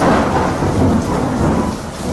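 Thunderclap sound effect: a sudden loud crash of thunder that starts at once and rolls on, easing slightly toward the end.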